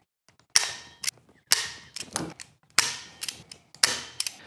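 Plastic zip ties pulled tight through their ratchet locks, a run of short sharp zips, about seven in all.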